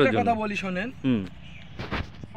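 A man's voice speaking for about the first second, followed near the end by a single short thump.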